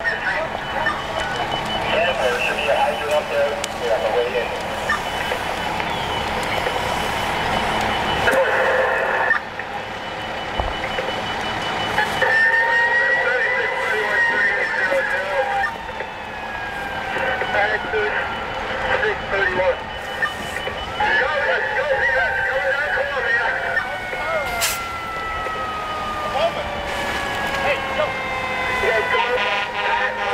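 Fireground commotion: voices over fire apparatus, with a siren tone falling slowly in pitch several times through the second half.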